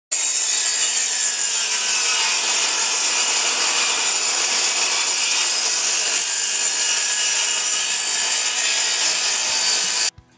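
Benchtop table saw cutting through a 2x4 board: a loud, steady, high-pitched whine of the spinning blade in the wood.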